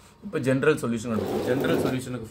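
A man's voice speaking, starting about a quarter-second in, with a second low sound mixed under it in the second half.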